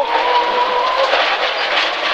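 Rally car at speed heard from inside the cabin: a loud, steady mix of engine, drivetrain and tyre noise, with a steady whine that stops about a second in.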